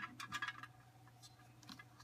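A few faint clicks and taps of a hand handling a clear plastic container, mostly in the first half second, over a steady low hum.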